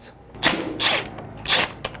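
Cordless 1/4-inch impact driver hammering in three short bursts as it loosens the bolt holding the metal camshaft position sensor cap on the end of an Audi camshaft.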